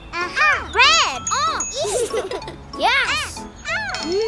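Cartoon characters' wordless vocal exclamations: a string of short 'ooh' and 'ah' sounds, each rising then falling in pitch, over light tinkling children's background music.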